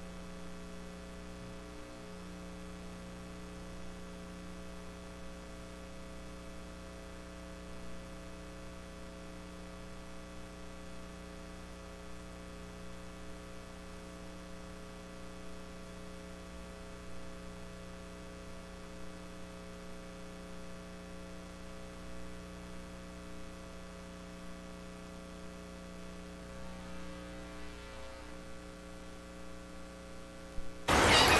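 Steady electrical mains hum: a constant low hum with a stack of higher buzzing overtones, unchanging throughout.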